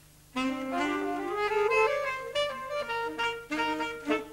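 Alto saxophone section playing a short phrase together in rehearsal. It comes in about a third of a second in, climbs stepwise through several notes, then holds around one pitch before stopping near the end.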